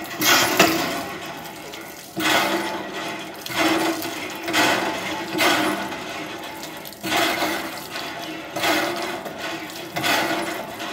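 Water splashing on a wet concrete floor in repeated surges, roughly one every second or so.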